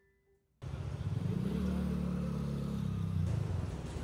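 City street traffic noise, starting abruptly about half a second in. A motor vehicle's engine passes close by, its low hum rising and then falling in pitch over about two seconds.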